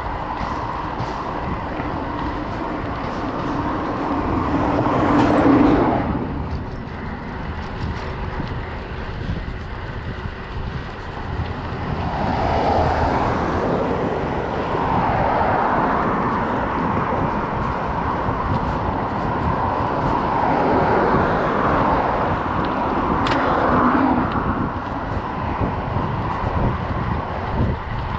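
Motor vehicles passing on the road beside a moving bicycle, over steady wind and road noise. One vehicle swells to the loudest point about five seconds in and drops away suddenly; more traffic passes in a series of swells through the second half.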